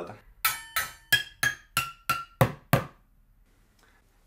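A short drum fill played with drumsticks on homemade toms made of kitchen pots and a bucket. It is eight evenly spaced strikes, about three a second, each ringing briefly at a different pitch, and the last two are deeper.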